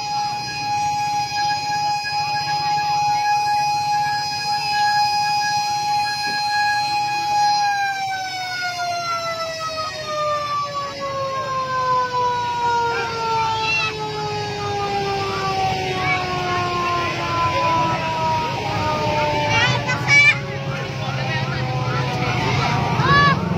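A siren holding one steady tone, then slowly winding down in pitch from about a third of the way in until it fades near the end.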